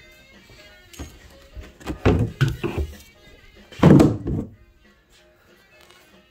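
Hood of a Kawasaki JS550 stand-up jet ski being unlatched and lifted off: a few knocks and thunks about two seconds in, then a louder thunk about four seconds in.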